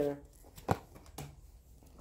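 A quiet room with one light, sharp tap about three quarters of a second in.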